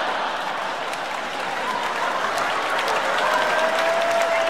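Audience applauding steadily after a punchline, with faint held tones joining in about halfway through.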